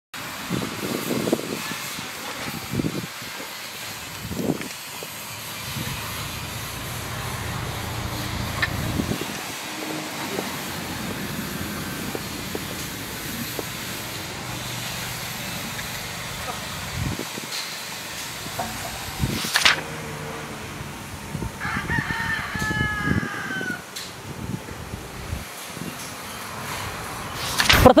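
A rooster crowing once, a drawn-out falling call about three-quarters of the way in, over a steady low background noise.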